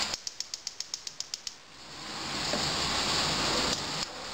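Gas stove's spark igniter clicking rapidly, about seven clicks a second for a second and a half, as the burner is lit under the pot. Then a steady hiss from the burner swells up and cuts off suddenly near the end.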